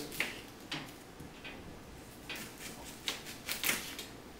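Kitchen knife cutting through a red onion and knocking on a wooden cutting board: several short, crisp cuts at irregular spacing, trimming off the onion's ends.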